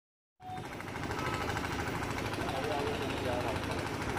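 Open-air street ambience: indistinct voices over a steady, rapid mechanical rattle, starting about half a second in.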